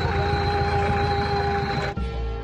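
Mobile crane running under load: a steady engine rumble with a steady whine over it. It cuts off suddenly near the end.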